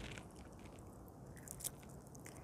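Faint clicks and crackle of cracked walnut shells being broken apart by hand to free the kernels, with a couple of sharper clicks about one and a half seconds in.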